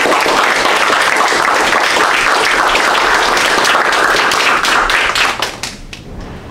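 Audience applauding: a dense patter of many hands clapping that thins into a few separate claps and stops just before the end.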